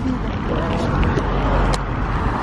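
Steady road traffic noise from cars passing on a busy street.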